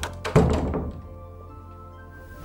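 Dramatic film background music of sustained tones, with one heavy thud about a third of a second in that rings away over about half a second.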